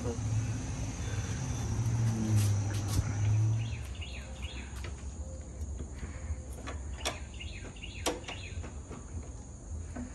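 A few sharp clicks and knocks of metal parts and tools being handled on a Yamaha Kodiak 700 ATV's suspension during reassembly, the clearest about seven and eight seconds in. A low hum fills the first few seconds, and faint chirping of insects or birds runs in the background.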